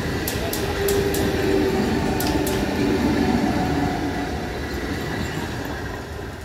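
Eastern Railway EMU local train passing close by: a steady rumble with sharp wheel clicks over the first couple of seconds and a humming tone in the middle. It fades near the end as the rear driving coach goes past.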